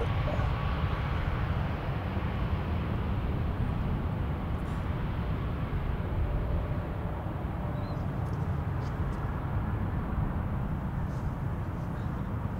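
Steady low rumble of distant jet engines across an airfield, from an airliner taxiing.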